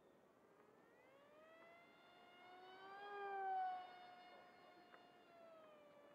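Electric brushless motor and 6x4 propeller of a small RC delta wing whining in flight as it passes. The whine rises in pitch and swells to its loudest about three and a half seconds in, then drops in pitch and fades.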